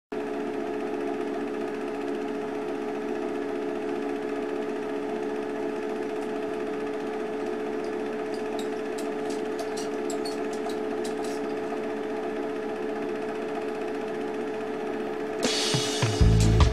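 Film projector running: a steady mechanical whir with a low hum, with scattered clicks and crackles around the middle. Near the end the song comes in with drums.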